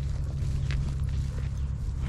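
Footsteps walking through dry pasture grass, over a steady low rumble.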